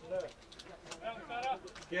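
Spectators shouting from the sideline: a few short, loud calls from men's voices, the last one starting near the end.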